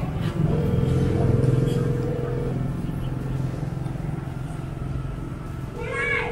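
A low motor rumble throughout, with a steady mid-pitched tone that sounds for about two seconds shortly after the start and comes in again near the end.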